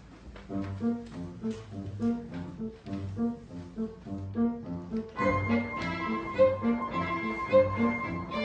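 Violin and grand piano playing. The piano starts about half a second in with an even, rhythmic figure of low notes, about two a second, and the violin comes in over it about five seconds in with a held singing line.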